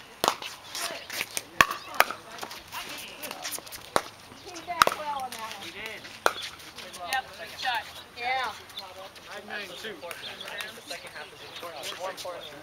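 Pickleball rally: sharp pops of paddles striking the hollow plastic ball, about six hits spaced a second or two apart, the loudest in the first five seconds, with voices in the background.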